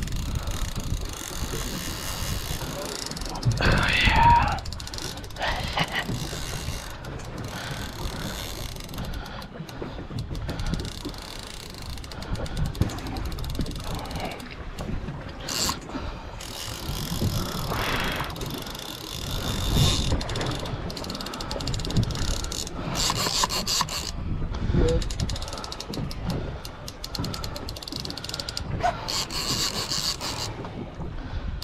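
A fishing reel ratcheting and clicking as a hooked shark pulls on the line.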